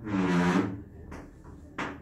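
Chalk tapping twice against a blackboard, about a second in and again near the end, as a dot is marked on the board. Before the taps, a man's voice holds one short drawn-out sound.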